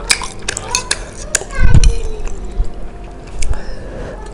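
A metal spoon clinking several times against a ceramic bowl as noodles are scooped. Background voices of a child and a man, and a dull thump a little before the middle.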